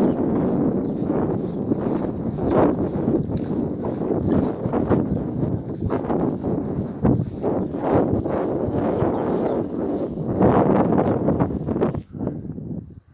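Wind gusting over a phone's microphone, a loud steady rumbling hiss. It is broken by irregular thumps and rustles as the phone is carried over grass.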